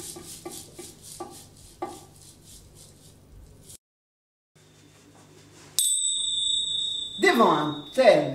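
Last plucked notes of a classical guitar dying away, then a moment of silence. About two seconds before the end a steady high ringing tone sounds for about a second and a half, and a woman starts speaking just as it stops.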